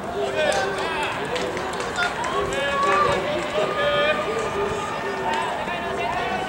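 Several men's voices shouting and calling out at a baseball game, overlapping one another with some calls held long.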